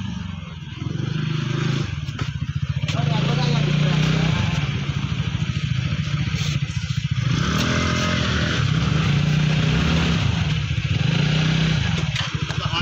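Small petrol motor-scooter engines running steadily at low speed as scooters ride up, with people talking over them.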